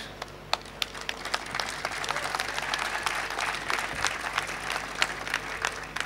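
Audience applauding: scattered claps at first that thicken into steady applause, then thin out near the end.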